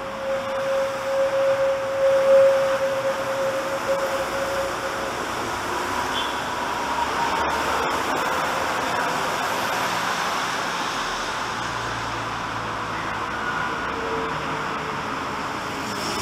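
Mexico City Metro train pulling out of the station and running away along the platform. A steady whine in the first few seconds gives way to a higher whine and rushing running noise that slowly fades as the train leaves.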